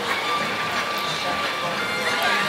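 Outdoor theme-park ambience: music playing over a steady wash of background noise, with a faint held tone.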